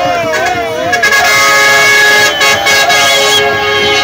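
Crowd voices shouting and chanting, then a vehicle horn sounding one long steady blast from about a second in, lasting over two seconds before fading near the end.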